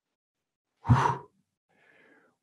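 A man's short audible breath, like a sigh, about a second in, with a fainter breath near the end.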